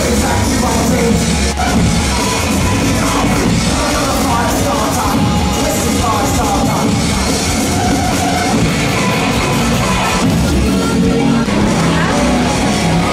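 Loud rock music playing steadily.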